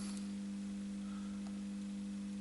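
Steady low electrical hum: one constant low tone with a few fainter higher tones above it and a faint hiss, unchanging throughout.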